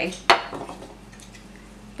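A single sharp click of a hard plastic knock-off Duplo toy piece knocking against the tabletop about a third of a second in, followed by faint handling.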